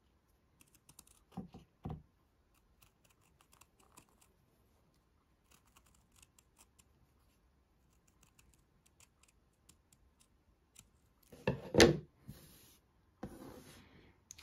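Scissors snipping through white felt in many small, faint cuts as an oval piece is trimmed out. Near the end there is one louder thump.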